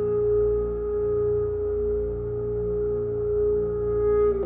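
Alto saxophone holding one long, steady, soft note over a low electronic drone from the tape part.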